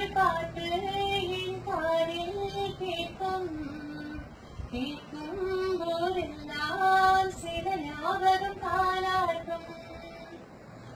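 A young girl singing a song solo, with long held notes that move up and down, and a short break for breath about halfway through.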